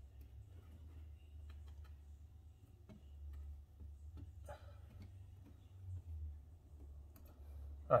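Faint, scattered clicks of small plastic parts as thermostat wires are pushed into the push-in terminals of an ecobee wall plate and the terminal tabs snap down to lock them.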